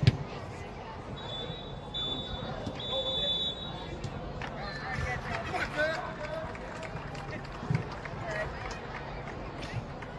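Sounds of an indoor youth soccer game: players and spectators calling out over general hall noise, with a few sharp knocks of the ball being kicked.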